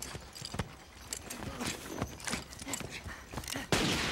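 Uneven knocking footsteps of boots on wooden steps and boards, about two or three a second. A sudden loud burst of noise cuts in near the end.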